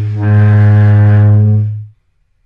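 A loud, low, steady droning note that dips briefly at the start, swells again, then fades out to silence near the end.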